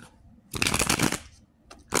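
Tarot cards being shuffled: a quick run of rapid papery flicks lasting just under a second.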